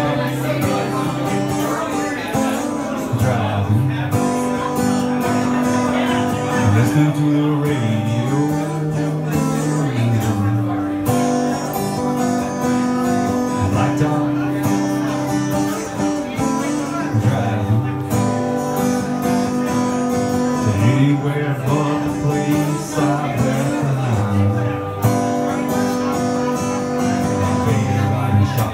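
Acoustic guitar strummed steadily while a man sings over it.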